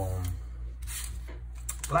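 Faint rustling and small clicks as a trading-card pack's wrapper is handled and picked up, over a steady low hum.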